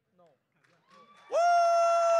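After about a second of near silence, a person's loud, long whoop held on one steady high pitch, sliding up into it at the start and dropping off at the end.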